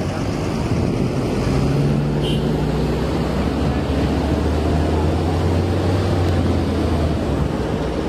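Traffic on a busy city avenue: a steady wash of road noise, with a low engine hum from a passing heavy vehicle swelling in the middle and then easing off.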